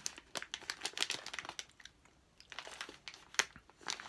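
Jelly Belly jellybean bag crinkling in irregular crackles as a hand rummages through it for beans, with one louder crackle near the end.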